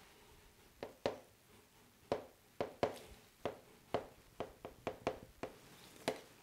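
A knife blade tapping and clicking against a cake board while carving a chocolate cake: about a dozen light, irregular taps, starting about a second in.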